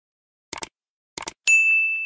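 Subscribe-button animation sound effect: two short clicks about two-thirds of a second apart, then a bright notification-bell ding that rings on and slowly fades.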